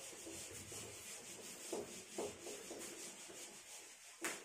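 A duster wiping marker writing off a whiteboard: faint rubbing in a series of back-and-forth strokes.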